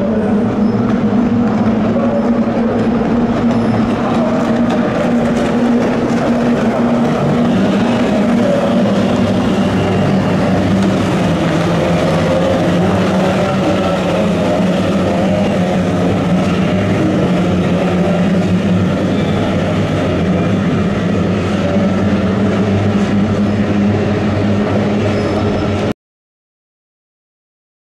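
Kyotei racing boats' two-stroke outboard engines running flat out as the pack races past, a loud, steady, buzzing drone of several engines together.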